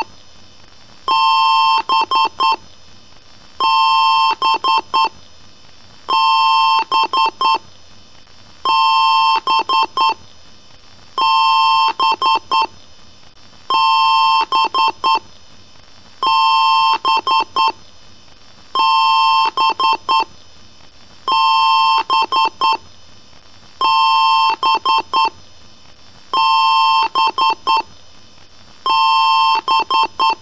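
Electronic beeper sounding a repeating pattern: a long beep followed by a few quick short beeps, the group repeating about every two and a half seconds, in the manner of a PC BIOS beep code during startup.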